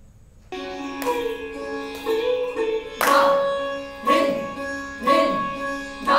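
Recorded Indian classical dance accompaniment music starts about half a second in: sustained melodic tones over a percussion stroke roughly every second.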